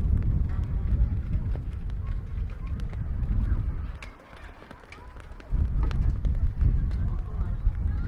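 Wind buffeting the microphone in gusts, a deep rumble that drops away for about a second and a half midway before returning, with faint voices of passers-by beneath it.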